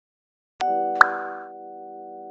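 Animated-logo intro sting: a held musical chord comes in about half a second in, and a short rising pop sound effect lands about a second in. The chord then settles a little quieter.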